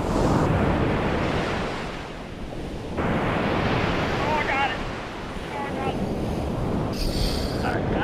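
Surf breaking on a sandy beach, a steady rushing wash of waves with wind buffeting the microphone.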